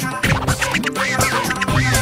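Dance music played over PA speakers, with a DJ scratch effect: quick swoops up and down in pitch over the beat, and a heavy bass line coming in near the end.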